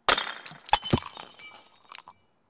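A crash sound effect for an animated title: a sudden loud smash about a tenth of a second in, then several more sharp impacts within the first second, with high ringing and tinkling that die away.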